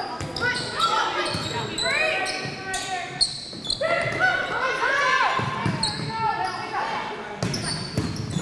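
Volleyball rally on a hardwood gym court: sneakers squeaking in short chirps, sharp smacks of the ball being hit several times, and players calling out.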